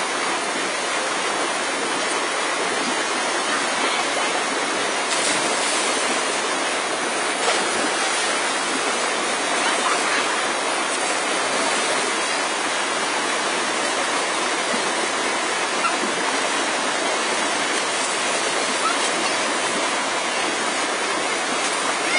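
Shallow river water rushing over and between boulders in small rapids: a steady, even rushing noise.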